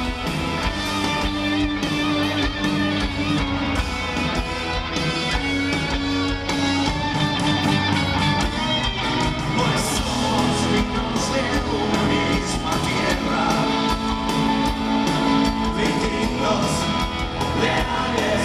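A live rock band playing at full volume: electric guitars, bass, drums and keyboard.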